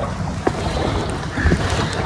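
Pedal boat moving on a lake: low wind rumble on the microphone and water against the hull, with two faint knocks, about half a second and a second and a half in.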